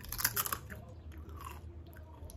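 A Doritos tortilla chip bitten with a cluster of crunches in the first half second, then chewed with softer, scattered crunches.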